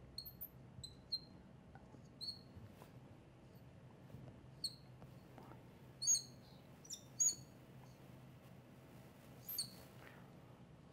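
Marker squeaking against a glass lightboard as it writes, in short, irregularly spaced chirps, the loudest a little past the middle, over a faint low hum.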